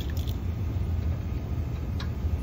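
A sharp click at the start and a couple of lighter clicks just after, from the spring-loaded back of a dent-repair key loading tool being pulled out and handled, over a steady low rumble.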